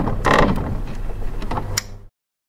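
Motion-graphics end-card sound effects: a broad whoosh about a quarter second in and a sharp click near the end, over a steady low hum, with a mechanical, ratcheting character.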